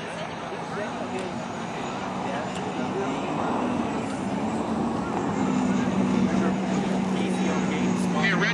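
Turbine engine of an Unlimited hydroplane running at racing speed, a steady jet-like rush over a low hum, growing louder as the boat draws nearer.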